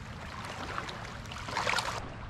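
Shallow seawater lapping and trickling over a rock shelf, with a short burst of splashing near the end.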